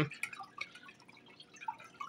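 Faint, irregular dripping of water in an AeroGarden hydroponic planter.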